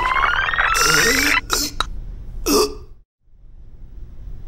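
Cartoon sound effect of a rising, rapidly pulsing whir as the wardrobe glows, over Booba's wordless questioning grunts ("Ha?"). It then falls to a brief silence near the end.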